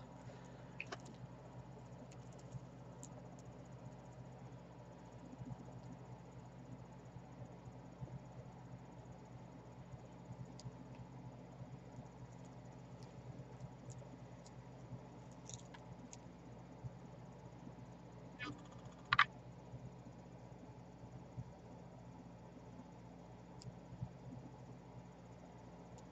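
Faint, scattered clicks of glass seed beads and pearls knocking together as a beading needle and thread are worked through them, one sharper click about 19 seconds in, over a low steady hum.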